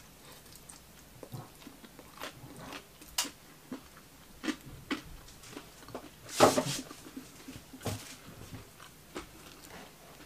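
A person chewing a mouthful of crispy croissant-crust pizza, with scattered short crunches and one louder crackle about six and a half seconds in.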